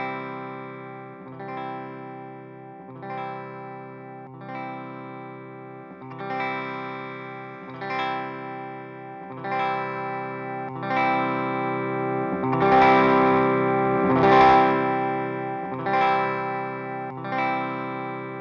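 A reamped electric guitar chord, struck about every one and a half seconds and left to ring, played through a Bugera Infinium G20 20-watt valve amp head while its tone knobs are being turned. In the middle the sound gets louder and grittier, then settles back.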